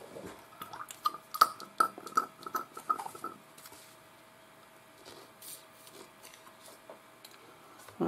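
Light clicks and taps of small objects handled on a workbench, a plastic pipette in a bottle of airbrush cleaner and a paper towel being set down, mostly in the first three seconds, with a faint wavering high tone alongside.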